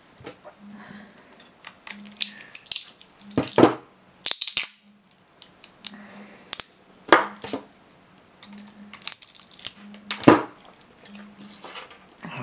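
Flat-blade screwdriver prying and scraping metal connector tabs off 18650 lithium-ion cells, with the cells knocking together and on the desk. Irregular sharp metallic clicks and scrapes, the loudest a little after three seconds, about seven seconds in and about ten seconds in.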